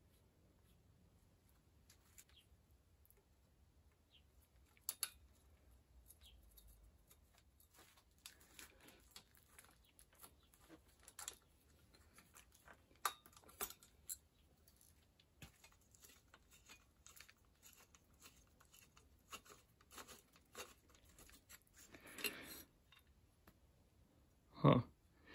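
Faint, scattered clicks and small metallic taps of hand tools working on an old bicycle's derailleur parts, with a short scrape near the end.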